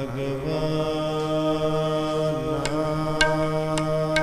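Sikh kirtan: a long, steady held note from the singer and accompaniment, with three light percussion strokes about half a second apart in the second half.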